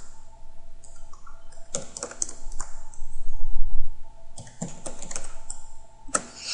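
Computer keyboard keys clicking in an irregular run as a short phrase is typed. A low rumble about halfway through is the loudest moment.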